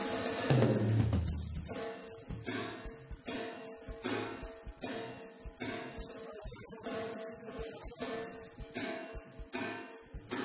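Live rock band on a rough, poor-quality recording: a loud low hit about half a second in, then rhythmic guitar strumming, about two strokes a second, over light drums.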